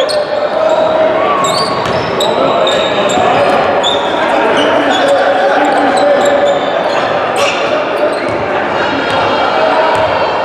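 Live sound of a basketball game in a large gym: indistinct voices echoing in the hall, a basketball dribbled on the hardwood court, and many short high squeaks of sneakers on the floor.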